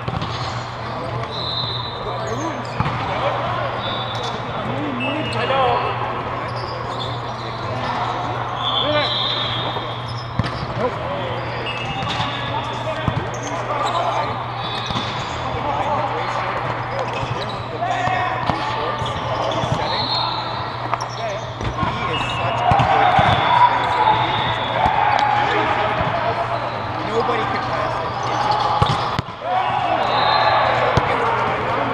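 Indoor volleyball play in a large dome hall: indistinct voices of players, a volleyball being hit and bounced, and brief sneaker squeaks on the court. A steady low hum runs underneath.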